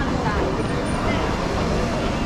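Busy street ambience: scattered voices of passers-by over a steady low rumble.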